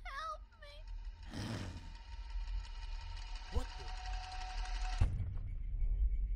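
A woman's voice giving a short, quavering, frightened cry. After a brief rush of noise, a steady high buzzing tone holds for about three seconds and cuts off sharply with a thud.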